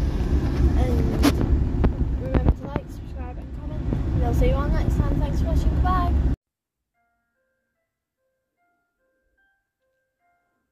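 Car cabin road noise, a steady low rumble, with a girl's voice over it; it cuts off abruptly about six seconds in, leaving near silence with a few very faint notes.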